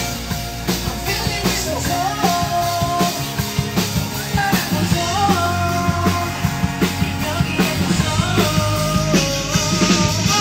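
Rock music played loud in a rehearsal room, with a drum kit and electric guitar, and male voices singing a melody into microphones from about two seconds in.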